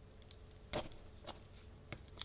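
Faint crackles and short clicks of adhesive tape being pressed and wrapped by hand around a small bulb on a 4.5-volt flat battery, a handful of them scattered through the moment, the strongest a little under a second in.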